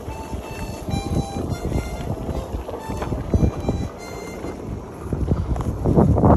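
Wind buffeting a phone microphone on a moving electric unicycle, a rough uneven rumble, with faint music underneath. The rumble grows louder near the end.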